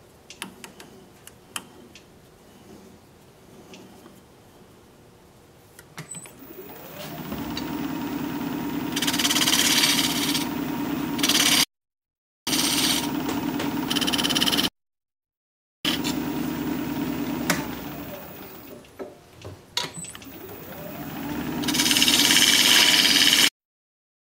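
Jet 1840 wood lathe starting up about six seconds in, its hum rising in pitch, then running while a tool cuts into the spinning wood with a hissing scrape that grows louder. It slows and starts up again near the twenty-second mark, and the sound cuts off suddenly a few times. The opening seconds hold only faint clicks of handling.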